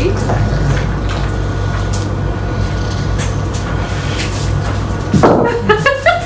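English bulldog handling a heavy raw bone on a wooden floor: soft knocks of bone on floorboards, with a louder knock about five seconds in, over a steady low hum.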